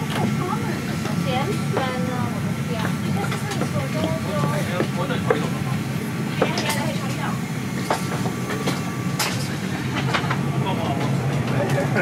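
Steady low cabin hum of a parked Airbus A350-900, from its air-conditioning and ventilation, with faint distant voices and a few light clicks over it.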